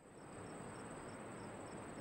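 Faint chorus of crickets: a steady high trill with short chirps repeating a few times a second.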